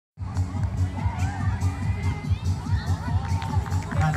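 Children shouting and calling out across a football pitch, over music with a steady, pulsing bass beat.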